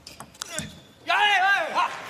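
Table tennis ball clicking sharply off bat and table in the last strokes of a rally, a few clicks in the first half-second. About a second in, a player gives a loud, high-pitched celebratory shout on winning the point, lasting under a second.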